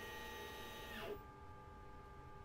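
Glowforge laser cutter whirring steadily as it runs its autofocus, then winding down with a short falling whine about a second in, leaving a fainter steady hum.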